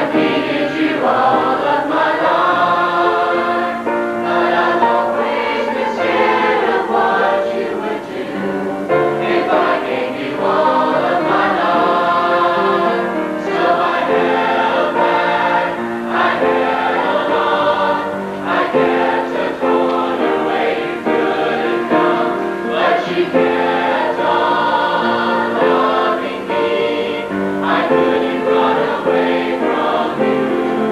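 Youth choir of teenage boys and girls singing together, many voices blended into one continuous choral sound.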